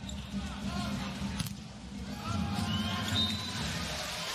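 Indoor volleyball rally: a ball struck hard about a second and a half in, with brief squeaks from players' shoes on the court, over a steady crowd din in the arena.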